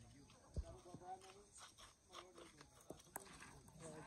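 Faint distant voices, with a few short knocks, the sharpest one about three seconds in.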